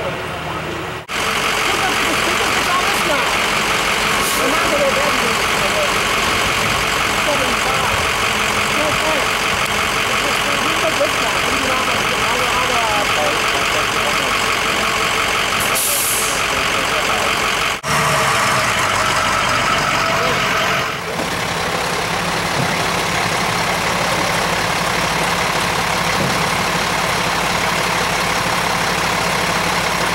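Diesel engine of a heavy tow truck idling steadily, changing abruptly a few times.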